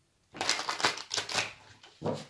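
A deck of reading cards shuffled by hand: a quick run of card flicks lasting about a second, tailing off near the end.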